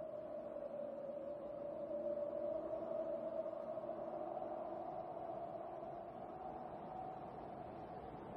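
Faint, sustained film-score drone of a few held tones, wavering slowly in pitch and swelling a little partway through.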